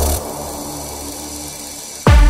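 Techno track in a breakdown: the kick drum and bass drop out about a fifth of a second in, leaving a quieter, buzzy, hissing synth texture with no beat.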